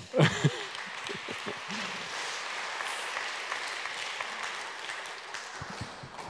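Congregation applauding, a steady spread of clapping that dies away near the end.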